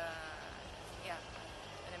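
A man speaking haltingly: a drawn-out, falling 'uh' at the start, then a short 'yeah' about a second in, over a steady low background hum.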